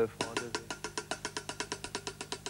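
Drumstick strokes on a drum kit: a fast, even run of light, sharp hits played as triplets to imitate the repeats of a tape echo.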